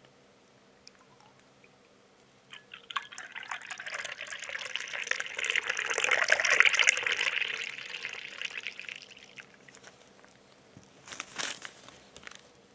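Megmilk Acadi milk poured from its paper carton into a glass. The pour starts about two and a half seconds in, splashes loudest near the middle as the glass fills with froth, and dies away about seven seconds later. A short noise follows near the end.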